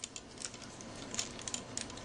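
Several faint, light plastic clicks and taps as a Beast Wars II Lio Convoy transforming figure is handled and its parts are moved.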